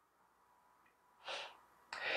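Near silence broken about a second in by one short sniff through the nose, from a person with a cold.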